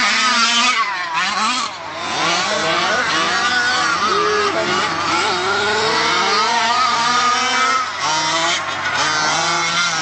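Modified 30.5 cc two-stroke engine of an HPI Baja 5B SS 1/5-scale gas RC buggy being driven hard, revving up and down over and over, its pitch rising and falling every second or so.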